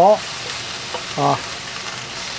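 Chinese onion stalks and roast pork slices sizzling in a hot oiled wok over high heat, a steady hiss as the spatula stirs them.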